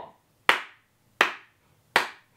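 Hand claps keeping a steady beat, three claps about three-quarters of a second apart, marking the pulse to read a rhythm against.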